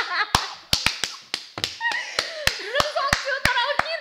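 Hand claps from a laughing person: about fifteen sharp, uneven claps, roughly four a second, over laughing voices.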